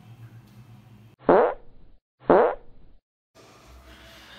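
Two fart sound effects about a second apart, each a short loud blast that falls in pitch.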